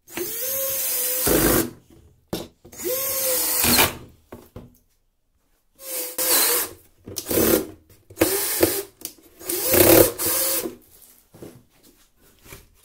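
Cordless drill driving screws through wooden strips into a plastic canister, in about six short runs with brief pauses between. Each run starts with a rising whine as the motor spins up, and the first two end in a heavier grinding as the screw seats.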